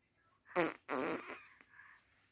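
A raspberry blown with the lips: two buzzing bursts, the first short and the second about half a second long, starting about half a second in.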